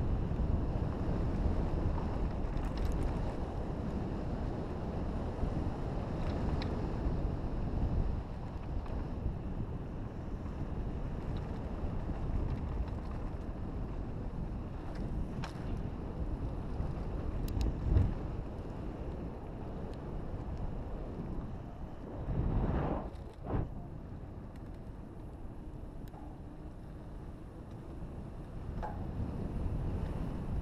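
Wind buffeting an action camera's microphone while a mountain bike rolls down a dirt fire road, with steady tyre rumble and scattered clicks and knocks from the bike over bumps. A sharp knock comes a little past halfway, and a louder rough rush of noise about three-quarters of the way through.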